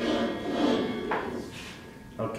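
A marble rolling down a clear plastic loop-de-loop track and around the loop. It is loudest in the first second, with a rising sweep about a second in, and fades as the marble climbs the far side and slows.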